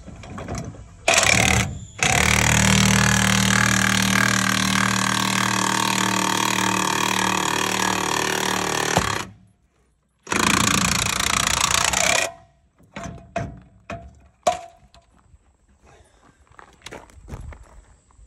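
Impact wrench hammering on the screw of a scissor jack pressed against a deflated tire's sidewall to break the bead. There is a short burst about a second in, a long run of about seven seconds, and another two-second run. Scattered knocks and clicks follow near the end.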